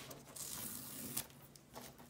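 A strip of orange tape being peeled off paper by hand, a quiet peeling noise with one brief sharper snap a little over a second in.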